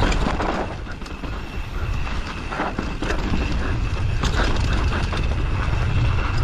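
Mondraker Summum downhill mountain bike rolling fast over a dry dirt trail: tyres on dirt with a steady clatter of chain and suspension over bumps, a freehub ratchet buzzing as it coasts, and wind rumbling on the chin-mounted action camera's mic.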